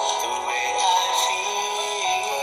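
A man singing a love song over backing music, holding drawn-out notes that glide from one pitch to the next.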